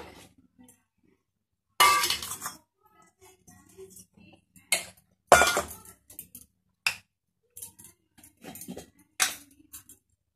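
Stainless steel kitchenware clinking and knocking: a steel plate and a steel mixer-grinder jar are handled as chopped ginger is tipped into the jar. Several sharp, irregularly spaced clinks, the loudest about five seconds in with a brief metallic ring.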